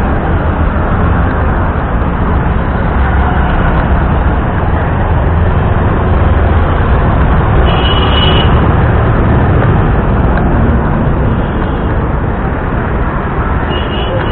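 Heavy road traffic passing close by: a loud, steady rumble of engines and tyres, with a short high tone about eight seconds in.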